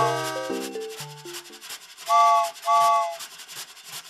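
Cartoon toy-train sound effects: a rhythmic scratchy chugging noise, with two short chord-like whistle toots about two and three seconds in. Bright children's music plays under it and stops about a second and a half in.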